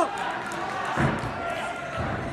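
A gymnast's feet strike a sprung floor-exercise floor once about a second in, a single heavy thud during a tumbling pass, over the hum of a large gym hall.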